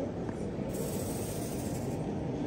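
Steady low background noise of an indoor public hall, with a faint high hiss joining about two-thirds of a second in.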